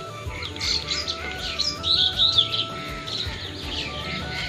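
Small birds chirping rapidly, busiest in the first half, over background music with a simple stepping melody.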